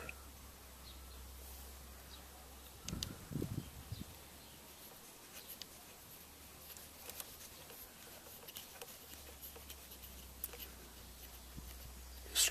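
Faint clicks and taps of fingers handling a small plastic bleed nipple at a diesel fuel filter housing, over a steady low hum. About three seconds in there is a brief, louder, low, muffled sound.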